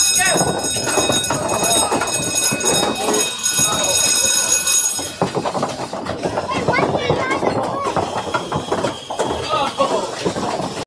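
Arcade ambience at a roll-a-ball race game: a set of high steady electronic tones sounds for about the first half, then balls knock and rattle rapidly along the wooden lanes, with people talking over it.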